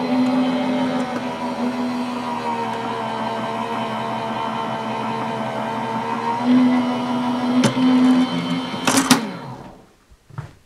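Electric die-cutting machine running steadily as it feeds a die sandwich through its rollers, with a couple of clicks near the end before the motor stops.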